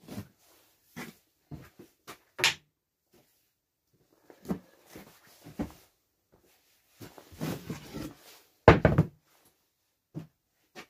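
Scattered knocks and handling noises at a wooden workbench, with a short scraping stretch and then the loudest knock near the end as an MDF board is turned around on the OSB bench top.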